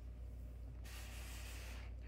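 Cardboard box being turned in the hand: a brief, faint rustle of about a second, starting just before the middle, over a low steady hum.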